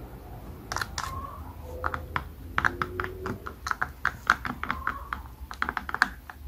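A rod stirring tinted epoxy in a clear plastic cup, knocking and scraping against the cup's sides in a rapid, irregular run of clicks, with a few faint squeaks.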